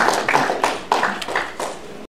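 A small audience applauding, the individual claps distinct and irregular, tapering off near the end.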